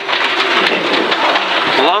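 Rally car running at speed on a gravel stage, with a dense, steady patter of loose stones thrown up against the underside and wheel arches.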